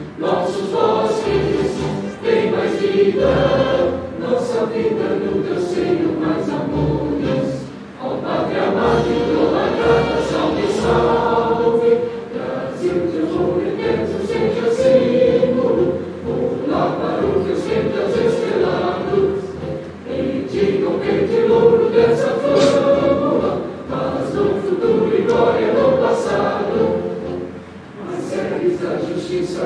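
A choir singing an anthem with instrumental accompaniment, in long phrases broken by short breaths every few seconds.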